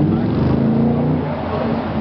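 A low, pitched rumble from a video-mapping show's soundtrack over loudspeakers, swelling and rising slightly, then easing off after about a second and a half. Crowd chatter runs underneath.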